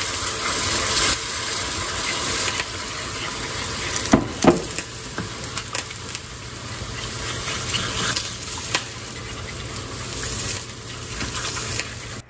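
Beef broth poured into a hot cast-iron skillet of browned flour roux, sizzling loudest in the first couple of seconds. It is then stirred with a wooden spoon, which knocks against the pan a few times, while the hiss eases as the liquid heats through.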